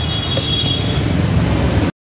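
Roadside traffic noise: a dense low rumble and hiss, with a thin steady high whine that fades about a second in. The sound cuts off suddenly just before the end.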